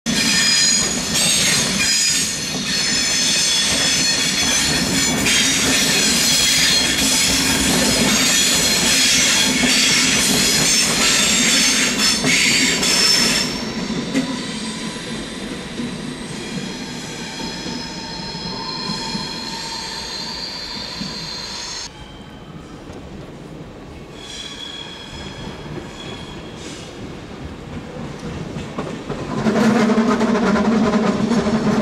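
SBB double-deck electric train running slowly past, its wheels squealing in several high tones. After about thirteen seconds the squeal drops to a quieter, thinner whine, dies away around twenty-two seconds, and the sound swells again just before the end as another train comes by.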